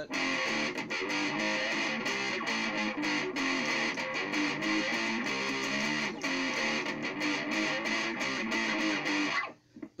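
Distorted electric guitar in drop D tuning playing a repeated rock riff of picked single notes and chugs, stopping shortly before the end.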